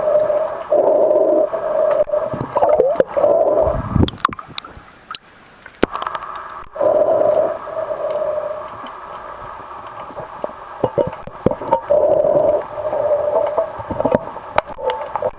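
Scuba diver's regulator breathing heard underwater: exhalations bubbling out in bursts of one to two seconds with a humming, gurgling tone, separated by quieter gaps, with scattered clicks and knocks.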